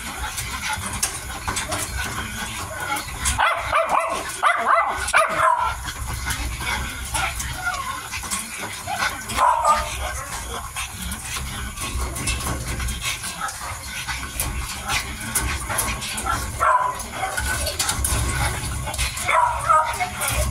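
Mini dachshund puppies eating from a bowl, with a run of small chewing clicks throughout and short high puppy yips now and then. The loudest yips come about four to five seconds in and again near the end.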